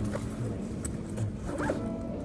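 A bag's zipper being pulled, with a short zip near the end, along with the rustle of the bag being handled.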